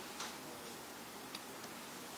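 Quiet room tone with a few faint, light clicks from a laptop being operated.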